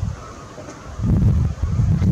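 Wind buffeting the camera's microphone: a loud, rough low rumble that starts about a second in.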